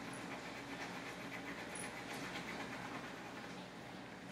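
Wax crayon scrubbing back and forth on a paper worksheet, a faint, continuous scratchy rubbing.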